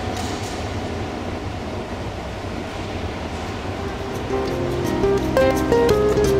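Steady low rumble and hiss of running escalators in an underground hall. About four seconds in, plucked-string music comes in and grows louder.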